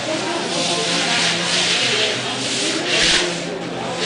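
Murmuring voices of people in a temple hall over a continuous rubbing hiss, which swells briefly about three seconds in.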